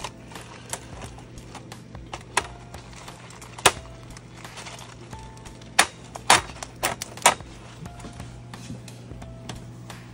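Plastic plant pots clicking and knocking against a plastic egg-crate grid as they are pushed down into it. The sharp clicks come singly at first, then in a quick cluster about six to seven seconds in, over a steady low hum.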